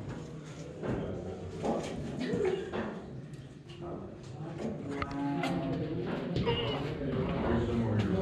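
Indistinct voices of a group of people in a cave passage, too unclear to make out words, with scattered short clicks and taps throughout.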